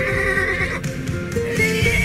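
A horse's loud, high whinny that ends about a second in, over film score music. A second high call begins near the end.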